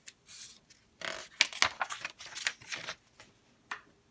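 Pages of a paperback picture book being turned and handled: paper rustling in a quick run of short bursts between about one and three seconds in.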